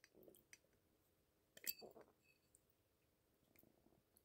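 Near silence with a few faint clicks and one soft, brief sound about a second and a half in.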